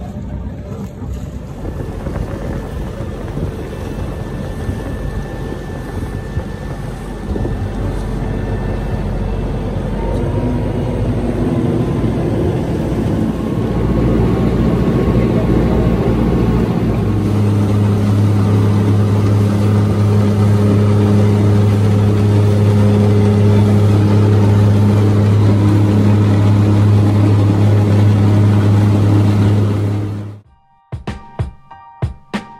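Small fishing boat's engine running at idle: a steady low hum under wind and water noise, growing louder and more even from about halfway through.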